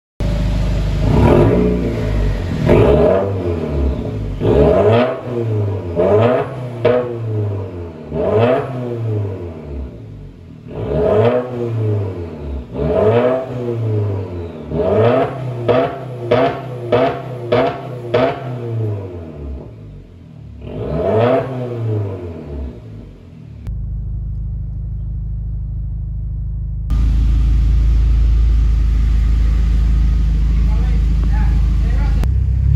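Subaru WRX's FA20DIT turbocharged flat-four, breathing through a straight-piped catback exhaust with no muffler, blipped over and over in free revs. Each rev rises sharply and drops back, with a rapid string of short blips around the middle. It then settles into a steady idle for the last several seconds.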